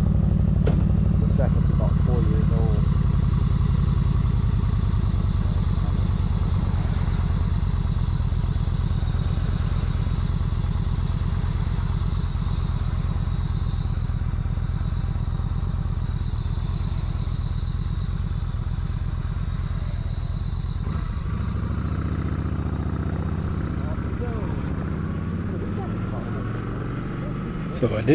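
Yamaha V Star 1300's V-twin engine running steadily while riding, with wind noise on the microphone. About three-quarters of the way in the engine note changes and the sound eases off a little.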